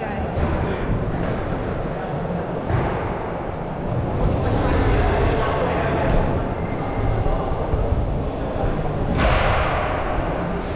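Wind rushing over a helmet-mounted camera's microphone while a mountain bike rolls over wooden ramps: a steady noise with heavy low rumble that swells slightly near the end.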